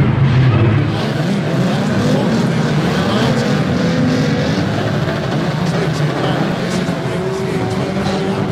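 Several banger racing cars' engines running together on the track, their notes rising and falling as they rev and pass. There are a few sharp knocks near the end.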